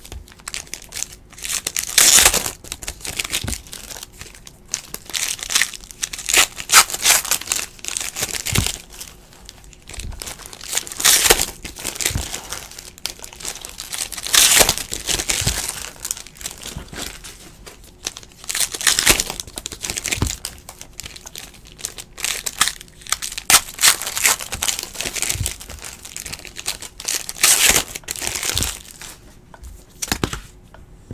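Stacks of trading cards being handled, shuffled and set down on a table mat: irregular bursts of rustling and crinkling every second or few.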